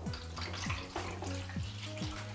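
Photographic indicator stop bath poured from a bottle into a developing tray, the liquid splashing steadily into it.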